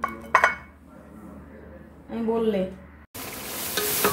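A brief clatter about half a second in, then, after a cut near the end, meat for kacchi biryani sizzling as it is stirred in an aluminium pot, a steady hiss with small crackles.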